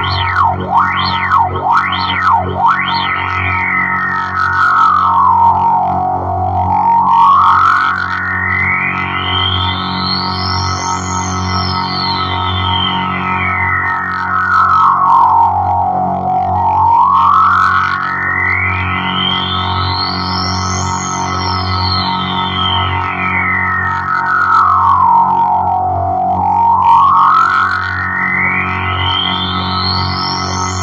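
Amplified droning chord played through effects, with a sweeping filter that glides up and down about every ten seconds. For the first couple of seconds the sweep flutters fast, then it settles into slow rises and falls.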